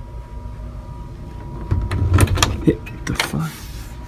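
An interior bedroom door being opened: a cluster of clicks and knocks from the knob and latch about halfway in, with a couple of short creaks as the door swings open.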